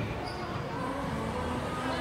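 Indistinct voices and background music filling a large indoor hall, at a steady level.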